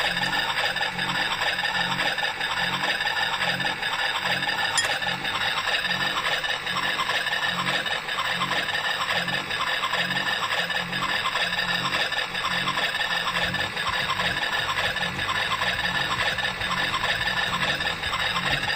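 Bambi battery-powered toy washing machine running with water inside: its small motor and plastic drum give a steady rattling whir with a regular pulse a little under twice a second.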